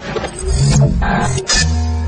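Loud dramatic intro music for a show's animated logo, starting abruptly, with a deep bass rumble and sharp hits about half a second and a second and a half in.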